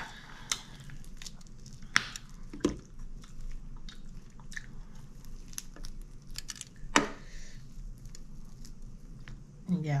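Close-up eating sounds: fried chicken being torn apart by hand and chewed, with a soft crackle of crisp skin and a few sharp clicks, the loudest about two and seven seconds in.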